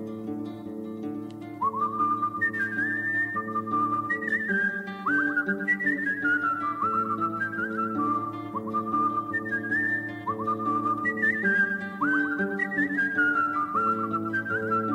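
Whistled melody over a steady sustained accompaniment, the instrumental opening of a song. The whistling comes in about one and a half seconds in, each phrase starting with a short upward slide into the note.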